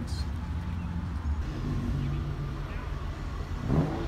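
Low, steady rumble of a tow vehicle and the wooden flatbed trailer it pulls rolling slowly over pavement, heard from the open trailer bed.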